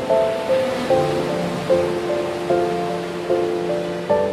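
Instrumental intro of a slow pop ballad: soft held chords, a new one coming in about every 0.8 s, over a steady wash of ocean surf.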